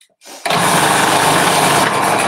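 Food processor motor starting about half a second in and running steadily, shredding courgette through its grating disc.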